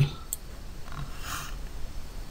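Quiet room tone with one faint click shortly after the start and a soft hiss about a second in.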